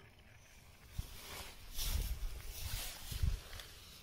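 Faint rustling and scuffing from a person moving with a handheld camera over dry grass, with a light tap about a second in and a patch of irregular rustling in the middle.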